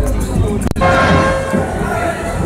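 An abrupt cut, then a steady ringing tone with a few higher overtones, held for under a second over the noise of a large walking crowd.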